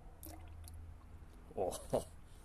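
Used engine oil pouring in a steady stream from the crankcase drain hole of a small Honda GX140 engine into a plastic drain pan. A man's short vocal sound comes near the end and is the loudest thing heard.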